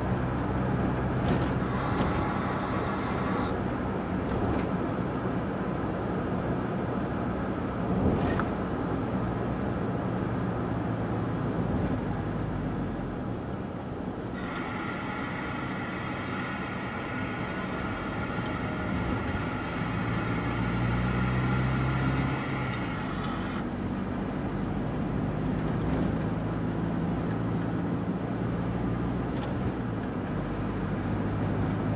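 Car interior noise while driving: a steady low engine hum under road and tyre noise. A higher steady hum comes in for several seconds in the middle.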